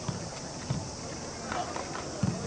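On-pitch sound of a football match: two dull thumps about half a second apart, typical of a ball being kicked, with players' distant shouts.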